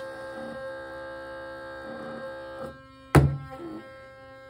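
Burst sonic electric toothbrush running with a steady buzzing hum, switched on for a two-minute cycle and working. About three seconds in, a single sharp knock as the brush is stood upright on the stone counter.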